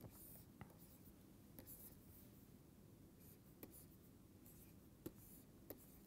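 Near silence, with faint taps and light scratching of a stylus drawing on a tablet screen; a few soft clicks come about a second apart.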